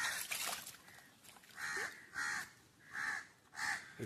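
A crow cawing repeatedly: five short harsh caws, one at the start and four more coming in quick succession through the second half.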